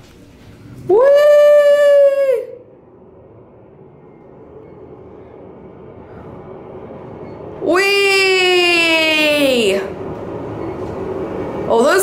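A man's excited whoop about a second in, and a second, longer whoop falling in pitch about eight seconds in, over the running noise of an Otis Elevonic scenic traction elevator car, which grows steadily louder as the car climbs at speed.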